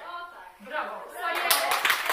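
Hands clapping in applause, starting about a second in and quickly getting loud, with voices alongside.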